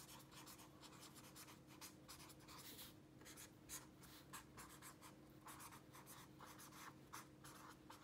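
Felt-tip marker writing on lined notebook paper: faint, quick scratching strokes, one after another, over a low steady hum.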